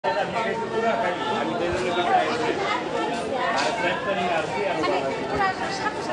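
People's voices: several people talking at once, overlapping chatter.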